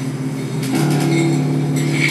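Live industrial dark-ambient noise music: a dense, steady low drone of layered tones that steps up in pitch and gets louder just under a second in, with metallic clatter and hiss over it.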